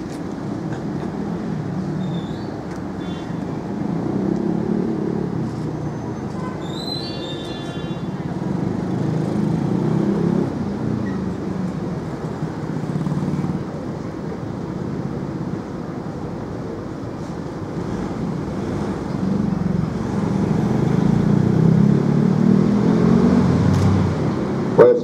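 Street traffic: passing cars and motorbikes, a low rumble that swells and fades as vehicles go by, with a brief high tone about seven seconds in.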